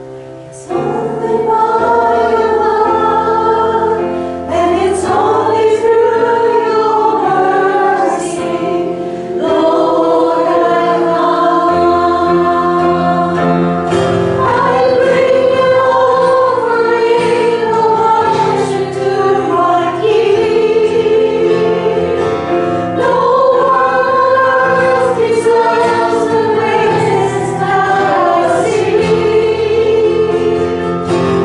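Worship song sung by a group of voices over sustained instrumental accompaniment. The singing comes in about a second in, after a brief dip.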